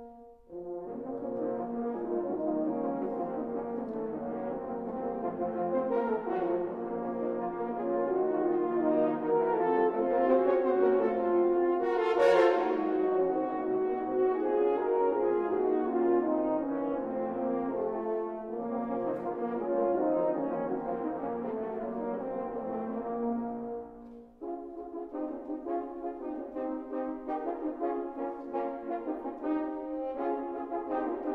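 A French horn choir playing together: layered, sustained chords that swell to a loud peak about twelve seconds in. After a brief break a little past twenty-four seconds, the horns continue in shorter, rhythmic repeated notes.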